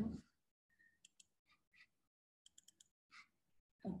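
Faint computer mouse clicks: a few scattered clicks and a quick run of four about two and a half seconds in.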